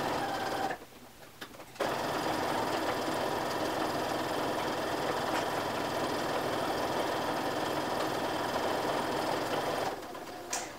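Electric sewing machine sewing a long straight basting stitch along the top edge of a loosely woven fabric ruffle, to be pulled up into gathers. After a brief sound and a short pause, the machine runs at an even, steady speed from about two seconds in, easing off near the end.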